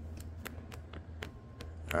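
A dozen or so faint, irregular light clicks over a low steady hum.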